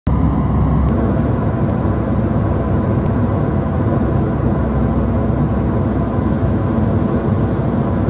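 Jet airliner in cruise heard from inside the cabin: a steady, deep rush of engine and airflow noise.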